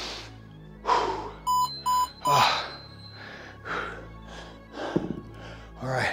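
Three short electronic beeps from a workout interval timer, in quick succession about one and a half seconds in, marking the start of the next exercise interval. Background music and loud breaths run alongside.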